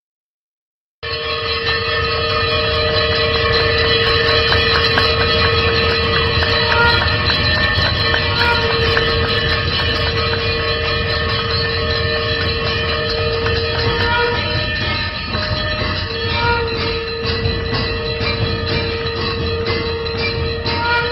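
Loud temple aarti accompaniment starting suddenly about a second in after silence: several sustained, blaring horn-like tones held together, with quick repeated beats and short higher ringing notes over them.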